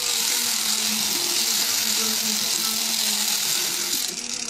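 Electric callus remover running, its spinning abrasive roller grinding against a male eclectus parrot's beak. The sound is a steady low motor hum under a high grinding hiss.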